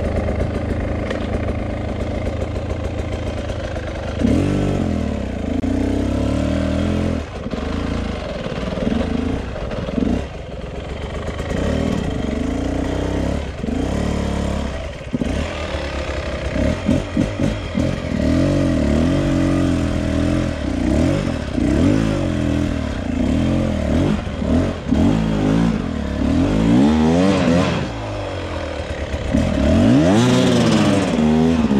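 2022 Beta RR 300 two-stroke single-cylinder enduro engine revving up and down under load as it is ridden off-road, its pitch rising and falling again and again as the throttle is worked.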